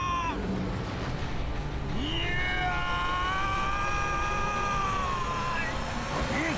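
A man's long, strained wailing cry, held at a high pitch, that drops away about a third of a second in. A second long, wavering cry starts about two seconds in and fades near the end, over a low rumble.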